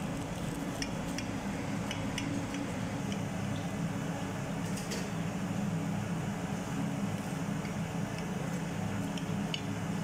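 Knife and fork cutting a batter-fried stuffed green chilli on a ceramic plate: scattered light clicks of the metal cutlery against the plate, the clearest about five seconds in, over a steady low hum.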